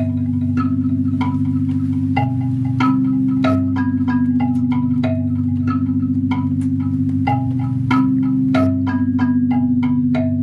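Live electronic music from synthesizers: a steady low drone with a fast wavering pulse, under a scatter of short, chime-like ringing notes at different pitches, a few each second.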